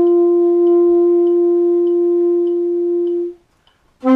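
Alto saxophone holding one long note, steady in pitch, that stops about three and a half seconds in, followed by a brief silence.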